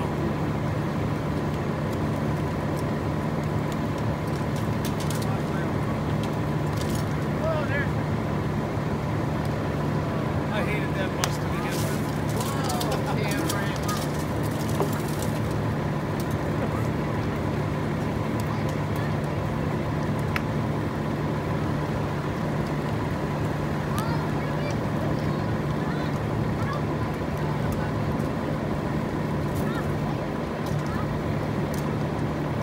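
A school bus burning in a full fire, over a steady low drone, with a flurry of sharp pops and cracks from the blaze about eleven to fifteen seconds in.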